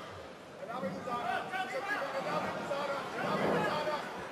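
Several voices shouting over one another against an arena crowd's murmur, rising about half a second in and loudest near the end.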